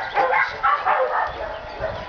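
A large shepherd-type dog vocalizing eagerly while begging at a treat pouch: a run of short calls in the first second or so, then quieter.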